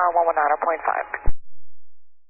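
A controller's voice over an air traffic control VHF radio, thin and narrow-band, cutting off with a click just over a second in as the transmission ends.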